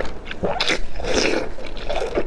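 Close-miked wet biting and sucking on a morsel of food soaked in chili oil, several separate mouth sounds in quick succession.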